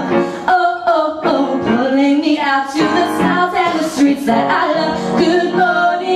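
Two women singing a show tune together into microphones over an instrumental backing, the voices holding and sliding between sustained notes.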